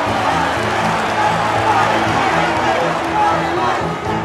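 A large crowd cheering and shouting under film-score music with a repeating low note; the crowd noise drops out at the very end.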